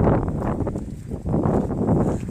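Wind buffeting the microphone in gusts, a low rumbling rush that is strongest at the start and surges again near the end.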